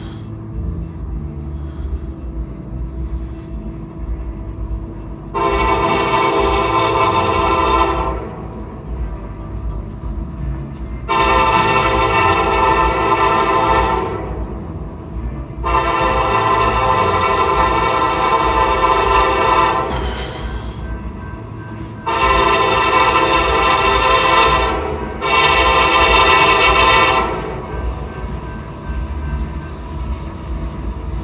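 Norfolk Southern diesel locomotive's air horn sounding five chord-like blasts of two to four seconds each, the last two nearly run together, over the low rumble of the approaching train: the warning for a grade crossing.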